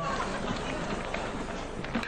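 Outdoor location ambience, a steady noisy hiss with faint scattered clicks and knocks.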